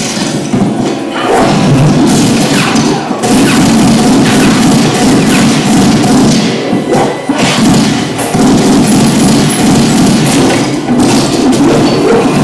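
Action-film soundtrack played loud through a TV's speakers: tense music under repeated thuds, crashes and impacts of an on-screen fight.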